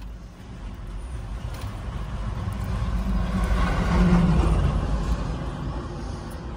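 A road vehicle passing close by, its engine and tyre noise growing louder to a peak about four seconds in and then fading away.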